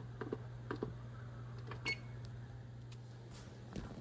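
Repeated presses on an electric oven's touchpad up-arrow button while setting the kitchen timer: a run of light clicks in the first second, then a short high beep about two seconds in, over a faint low steady hum.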